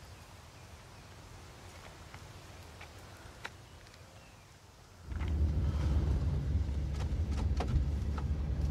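Faint outdoor ambience with a few small clicks, then, about five seconds in, a sudden change to a loud, steady low rumble of a van's engine and road noise heard from inside the cabin.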